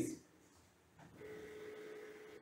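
Revopoint dual-axis turntable's tilt motor running with a faint, steady whine for about a second, starting about a second in, as it tilts the platform.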